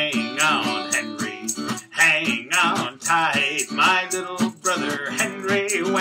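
Man singing a cheerful children's song to his own strummed acoustic guitar, with steady strumming under the voice.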